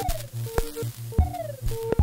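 Ciat-Lonbarde Plumbutter drum-and-drama synthesizer playing a looping patch: sharp clicky hits about every 0.7 s, several followed by a short falling bleep, over short steady blips and a pulsing low tone.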